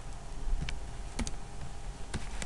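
Three sharp keystroke clicks on a computer keyboard, the middle two close together, over a steady low hum.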